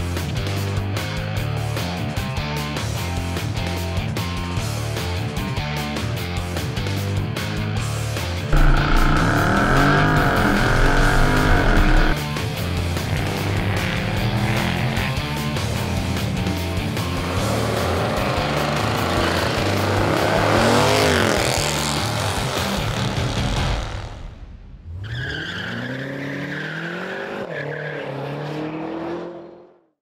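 Music, then the Jeep Grand Cherokee SRT's tuned 6.4-litre Hemi V8 under hard acceleration on track with loud exhaust, its tyres squealing through a corner about a third of the way in. Near the end the engine note rises in repeated sweeps through the gears before the sound fades out.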